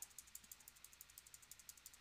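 Near silence, with faint, rapid, evenly spaced clicks of a computer keyboard key tapped over and over to page through terminal output.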